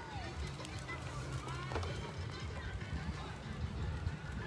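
Outdoor park ambience: distant voices and faint music over a steady low rumble.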